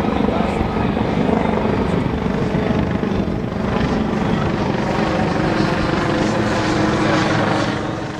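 Steady drone of an aircraft engine, with crowd voices underneath.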